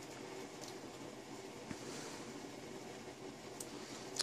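Faint, steady room-tone hiss with a couple of faint ticks, as hands quietly pass a beading needle and thread through seed beads.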